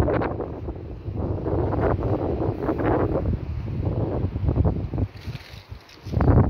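Wind buffeting the microphone in uneven gusts, a low rumbling rush that eases off near the end.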